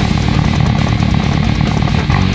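Custom six-string fretless bass with roundwound strings played fingerstyle in a fast, dense run of low notes, inside a heavy metal mix with distorted guitars.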